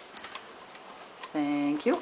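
Near quiet with faint ticks for over a second, then a woman's drawn-out spoken word near the end.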